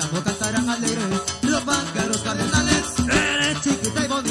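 Live tropical band music in the costeño son style, without vocals: a stepping bass line and dense percussion, with a metal güiro scraped in a steady rhythm. A brief high held note stands out about three seconds in.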